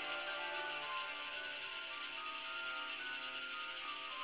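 A steady hiss with several held, slowly shifting tones underneath, like eerie ambient music.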